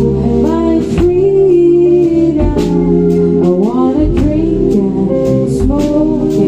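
A band playing live: a woman's lead vocal over electric guitar, acoustic guitar, electric bass and drum kit.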